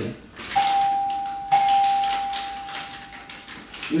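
Doorbell chiming twice on the same note, about a second apart, the second ring fading away over a couple of seconds.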